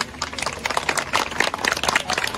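Applause: a small group clapping by hand, irregular claps growing denser after the first half second.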